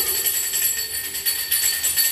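A small brass hanging bell shaken by hand, ringing continuously with several clear, high tones.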